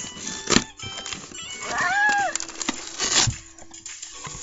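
Brown paper mailer envelope being torn open by hand: a sharp rip about half a second in and a longer tearing stretch near three seconds. A short voice sound that rises and falls in pitch comes in between, about two seconds in.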